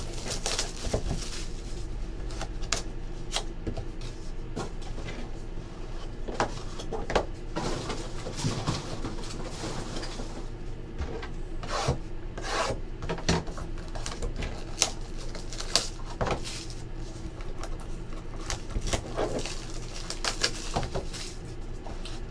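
Trading-card boxes being handled on a table: repeated rubbing and scraping of cardboard with light taps as hands slide, open and stack the boxes, over a steady low hum.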